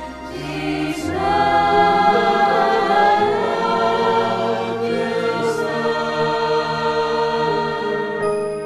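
Mixed choir of sopranos, altos, tenors and basses singing long held chords of a slow hymn, swelling about a second in and easing off toward the end.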